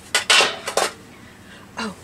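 A brief clatter of small hard objects being handled, in two quick bursts within the first second.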